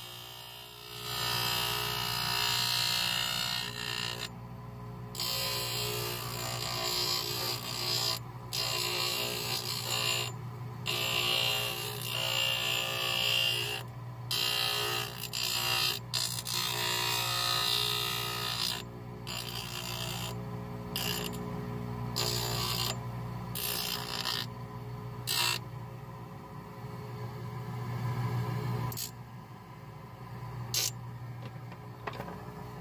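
Stone grinding wheel spinning on a motor spindle with a steady low hum, grinding orthodontic brackets off a 3D-printed dental model: a gritty hiss that swells and breaks off again and again as the model is pressed to the wheel and lifted. The grinding dies down over the last few seconds, leaving mostly the motor hum.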